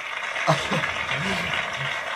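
A man chuckling softly in short low bursts.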